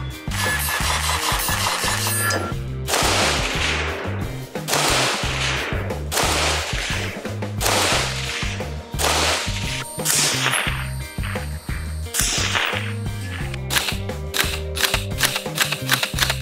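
Background music with a heavy, steady beat, mixed with gunshots from a CMMG Mk57 5.7x28 AR pistol. The shots come roughly every second and a half, then in a quick string near the end.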